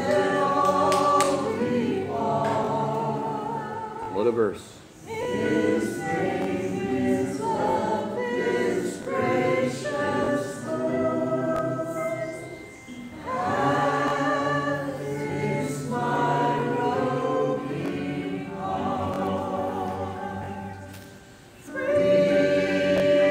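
A group of voices singing a gospel hymn together in long held phrases, with short breaks about four seconds in, about thirteen seconds in and near the end.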